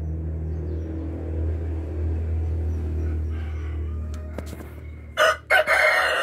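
A steady low hum, then near the end a rooster crows loudly in two parts, a short call followed by a longer one.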